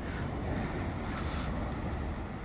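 Steady wind noise rumbling on the microphone, with surf on the beach behind it.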